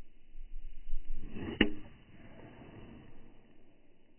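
Full golf swing: the swish of the club coming down, then a single sharp click as the clubhead strikes the ball about one and a half seconds in.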